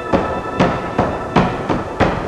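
Effect-distorted logo music: a run of sharp percussive hits, two or three a second, over a held chord that fades out about half a second in.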